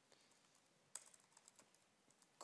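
Faint computer keyboard typing: a short run of keystrokes about a second in.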